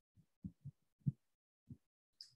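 Near silence broken by about five faint, soft low thumps spread through the two seconds.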